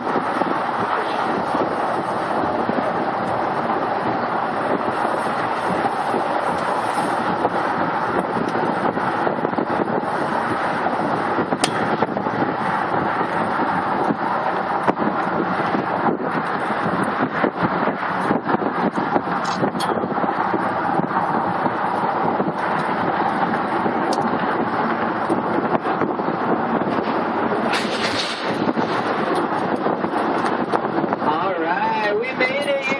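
Steady wind rushing over the microphone mixed with road and traffic noise, heard from the upper deck of a double-decker bus moving at speed across a bridge.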